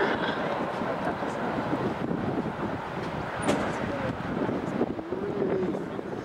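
Steady jet engine noise from a Boeing 737 airliner flying overhead, heard as an even rushing noise with faint voices underneath.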